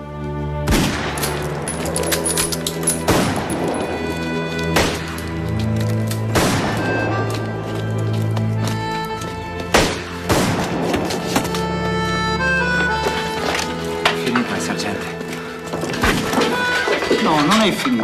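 Dramatic film score with sustained low notes, crossed by scattered, irregular musket shots of a battle, about ten sharp cracks over the stretch.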